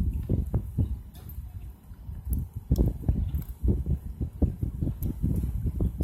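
Wind buffeting a phone's microphone, heard as irregular low thumps and rumbles.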